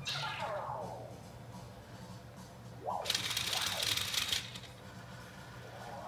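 LEGO Boost R2-D2 robot waking up. It gives a falling electronic whistle, then a short chirp about three seconds in, then about a second and a half of rattling, buzzing chatter.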